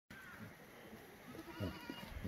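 A herd of Korean black goats bleating, several short calls overlapping one another, the loudest about one and a half seconds in.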